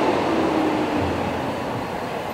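Large coach bus driving slowly up close along a street: engine and road noise with a low hum, and a faint tone sliding slightly down in pitch over the first second and a half.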